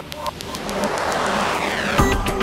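A rising noise sweep in electronic background music, building steadily in loudness over a fast, even ticking, as a build-up between sections of the track.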